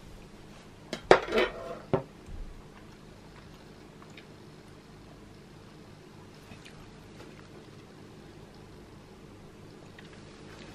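A metal kitchen utensil clattering on a hard chopping board: a quick cluster of knocks and clinks about a second in, ending with one sharper knock, then only faint room hum.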